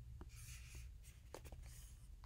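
Faint rustling, twice, with a few soft clicks, over a low steady hum: bedding or the recording device being shifted as he moves in bed.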